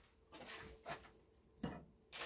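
Faint off-camera handling noises: a few soft knocks and rustles as someone moves about and fetches a can from a shelf or drawer in a small room.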